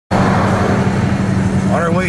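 Steady road and engine noise inside a vehicle cabin at highway speed, a continuous low rumble with hiss above it.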